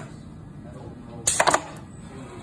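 A few sharp mechanical clicks and knocks in quick succession about a second and a half in, from the conveyor sorting station as a part is set running, over a steady low machine noise.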